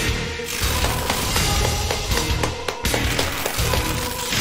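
Fight-scene soundtrack music with a pulsing bass, and several short hits partway through.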